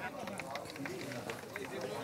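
Faint background chatter of a group of people talking, with a few small clicks.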